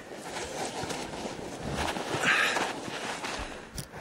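Packed snow crunching and scraping as someone moves and digs through a snow tunnel, rough and uneven, louder for a moment about two seconds in.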